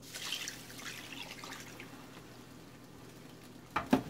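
Water poured from a glass into a slow cooker, splashing onto raw oxtails in the pot; loudest in the first second and tapering off as the pour ends. Two short knocks near the end.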